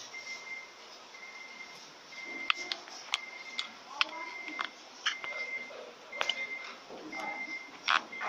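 A high electronic beep, about half a second long, repeating roughly once a second, over scattered sharp clicks and knocks, the loudest knock near the end.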